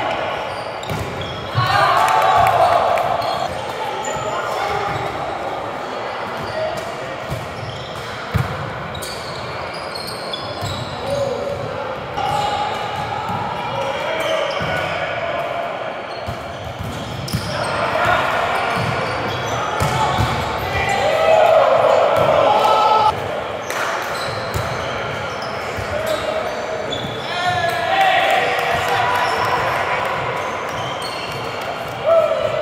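Indoor volleyball rallies: the ball being struck and bouncing on a hardwood gym floor, with players' shouted calls and the echo of a large hall.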